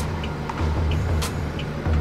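Truck engine idling, heard inside the cab as a steady low hum, with a couple of faint clicks.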